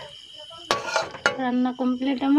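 Dishes and utensils clinking: two sharp clinks about half a second apart, then a voice coming in near the end.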